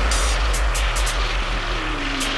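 Dubstep track with a heavy, pulsing sub-bass, a slowly falling synth tone and short hi-hat ticks over it.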